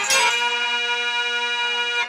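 A pair of iron kartal clappers struck together, leaving a sustained metallic ringing made of several tones at once.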